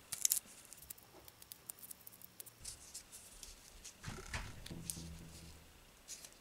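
Faint crinkling and ticking of masking tape over a rolled-foil core being pressed and split with a pointed tool, with a few sharp clicks just after the start. About four seconds in comes a brief low hum.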